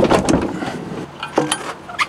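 Knocks and clunks with rustling as someone climbs out of a camper van and up onto its roof, the loudest knock right at the start and a few more clicks about one and a half seconds in.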